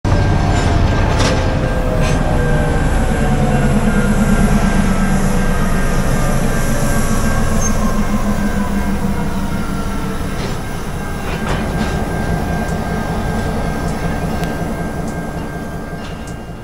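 Freight train passing close by: the diesel engine of an Essex Terminal Railway switcher locomotive rumbling as it hauls tank cars, with a steady high squeal from the wheels on the rails and a few sharp clicks. The sound fades gradually in the last few seconds as the train moves away.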